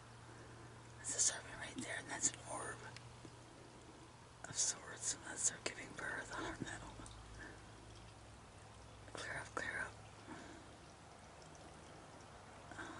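A person whispering in three short stretches, quiet and hissy, over a faint steady low hum.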